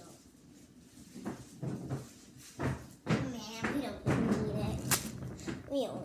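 Indistinct voice talking or vocalizing without clear words, with a few knocks and a sharp click about five seconds in.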